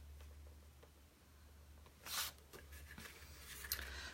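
Quiet work sounds over a low steady hum: one brief soft rustle about halfway through, from paper being handled on the craft table, and a few faint ticks near the end.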